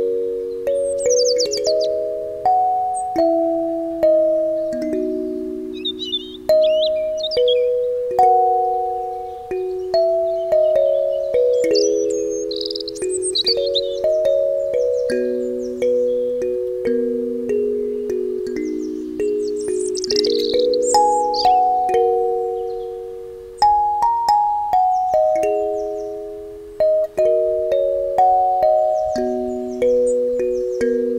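Wooden-bodied Gecko kalimba (thumb piano) being plucked in a slow melody. Its metal tines ring and fade, often two or three notes sounding together. Birds chirp briefly a few times in the background.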